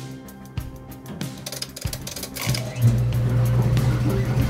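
Background music, then about two and a half seconds in a front-loading washing machine starts up, its drum turning with a loud, steady low hum.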